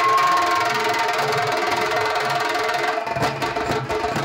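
A troupe of stick-played drums beating together in a fast, dense rhythm, with steady held melody tones over them for the first three seconds. After that the drum strokes stand out on their own.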